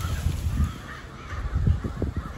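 A large flock of ravens cawing faintly all around, under wind rumbling on the microphone in gusts.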